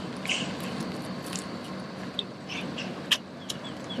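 Outdoor background noise with a steady low hum, a few brief high-pitched chirps, and a sharp click about three seconds in.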